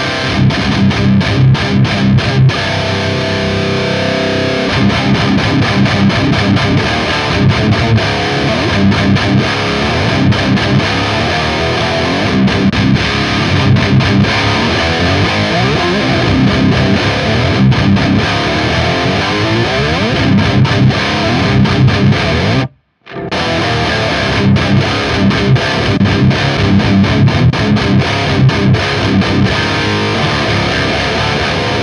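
Electric guitar with heavy distortion played through a KSR Ceres distortion preamp pedal, riffing continuously with repeated low chugs. The sound cuts out for a split second about three-quarters of the way through, then resumes.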